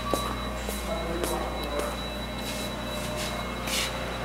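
Steady low machinery hum of a print-shop floor with a faint high whine, and soft scuffing noises about twice a second as someone walks.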